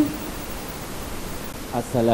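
A long held sung note of a girl's Quran recitation cuts off right at the start, leaving a steady background hiss. About two seconds in, a man starts speaking into a microphone.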